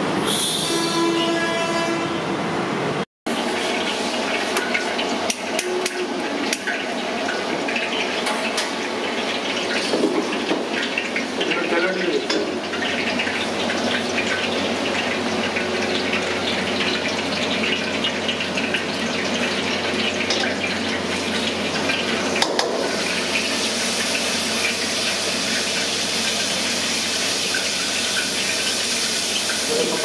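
Hot oil in a wok over a gas burner: a steady hiss with faint crackles and a low hum, the hiss getting louder and brighter in the last several seconds. In the first three seconds a held, horn-like pitched tone sounds, cut off suddenly.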